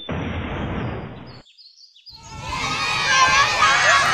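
A crowd of children shouting and cheering together, swelling in about halfway through after a brief cut-out. Before the gap there is a muffled stretch of outdoor crowd noise.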